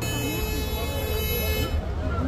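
A steady, high-pitched buzzing tone with many overtones starts suddenly and cuts off after a little under two seconds, over background street chatter and a low rumble.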